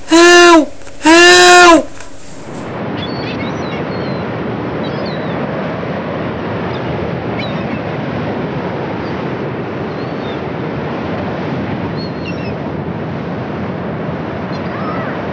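Three short, loud calls, each rising then falling in pitch, in the first two seconds, then a steady rushing noise with faint high chirps over it.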